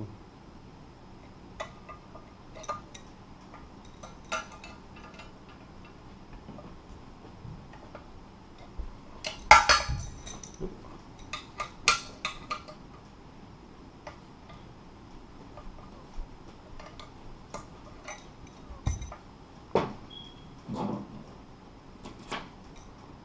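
Scattered metal clinks and clicks of an adjustable wrench working the bolts on a metal mailbox post arm while they are snugged up, loudest in a cluster about ten seconds in and again a couple of seconds later.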